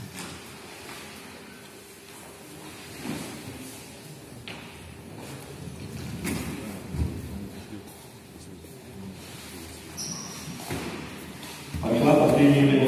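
Reverberant sports-hall ambience: an indistinct murmur of voices in a large room, with a few brief knocks and thuds scattered through it.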